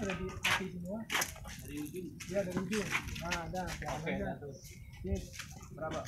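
People talking in the background, their words not clear; only conversation, no other distinct sound.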